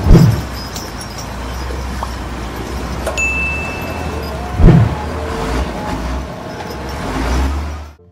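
Single-drum road roller running with a steady low engine rumble while compacting a dirt road bed. A short swoosh comes at the start and another about four and a half seconds in, and a brief high chime sounds around three seconds in.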